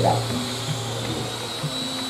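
A pause between speakers filled with steady room noise: an even hiss with a thin high whine, under a low steady hum that stops after about a second and a half.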